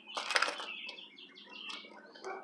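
A key prying and scraping at the lid rim of a metal pipe-tobacco tin, giving a cluster of sharp metallic clicks about half a second in and lighter clicks after, as he works to break the tin's vacuum seal. Faint bird chirps sound in the background.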